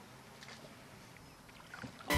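Faint sound of a solo canoe being paddled on calm water, with a few light taps about half a second in and again near the end.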